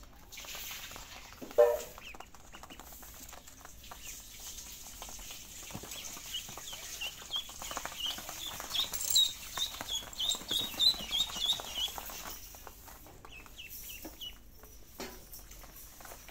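Ducklings peeping: a run of short, high, rising peeps, about two to three a second, that builds through the middle and fades, with a few more near the end. A single short, lower call about a second and a half in is the loudest sound.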